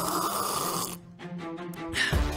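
A person taking a long, noisy sip of water that ends about a second in, followed by quiet background music.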